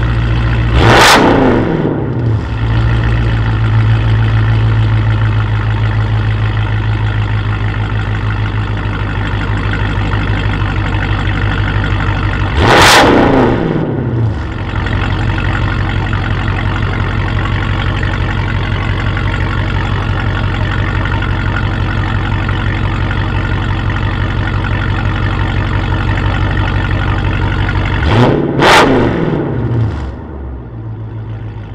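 2017 Jeep Grand Cherokee SRT's 6.4-litre HEMI V8 idling steadily and blipped to a quick rev three times: about a second in, around halfway, and near the end, where two blips come close together. Each rev rises sharply and falls straight back to idle.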